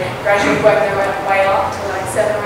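A woman's voice talking through a public-address system in a large hall.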